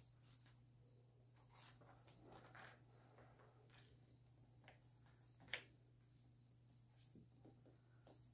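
Near silence: faint soft handling sounds as wet, paste-backed wrapping paper is pressed into the corner of a frame, with one brief tap about five and a half seconds in. A faint steady high-pitched whine and a low hum sit under it.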